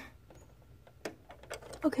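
A few faint clicks and taps of plastic Lego pieces being handled, with one sharper click about a second in.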